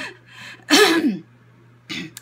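A woman lets out one short, breathy burst of voice about a second in, falling in pitch: a cough caught up in laughter.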